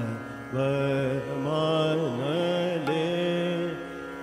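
A male voice singing a Hindustani classical line in Raag Bhupali: long held notes joined by slides up and down, starting about half a second in and fading near the end.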